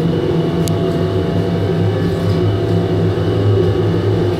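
Oil-fired industrial container washing machine running: a steady low machine hum under even noise, with one short tick under a second in.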